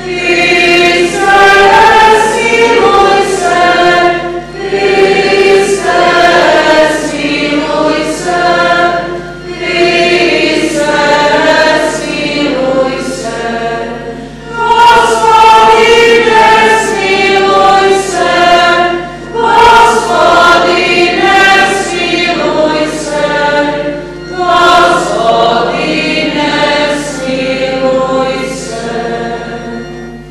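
Church choir singing a sung part of the Mass in phrases of a few seconds, with short breaks between them.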